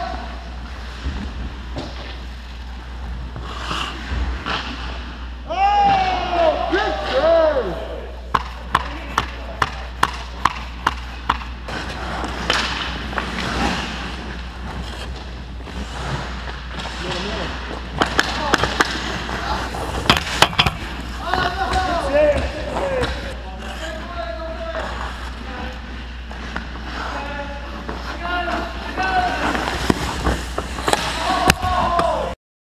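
Ice hockey play heard from the goal: skate blades scraping the ice, stick and puck knocks, and players shouting. A run of about eight evenly spaced sharp knocks, roughly two a second, comes a quarter of the way in, with more scattered knocks in the middle.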